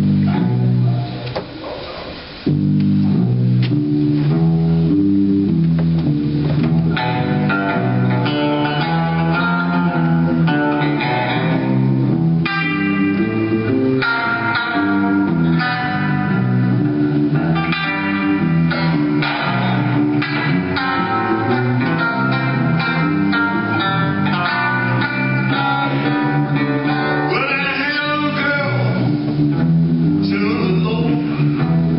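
Two guitars, one of them electric, playing a ragtime-flavoured Piedmont blues. A steady alternating bass line runs throughout, and melody runs join in about seven seconds in.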